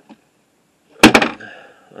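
A sudden knock about a second in: a quick cluster of about three sharp impacts that dies away fast.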